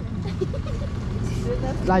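Motor scooter's small engine running at low speed as the scooter rolls slowly forward, a steady low hum.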